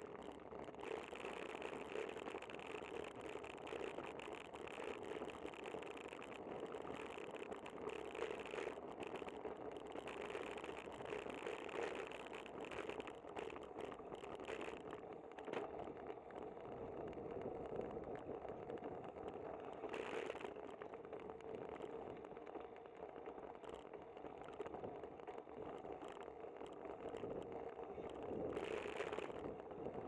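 Riding noise picked up by a camera mounted on a moving bicycle: steady tyre-on-pavement rumble with a light rattle from the bike. A car passes close by near the end, briefly louder.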